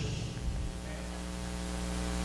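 Steady electrical mains hum through the church sound system: a low buzz with many overtones, slowly growing louder.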